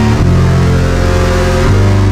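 Heavy metal instrumental: distorted electric guitar and bass holding low sustained chords, changing chord just after the start and again near the end.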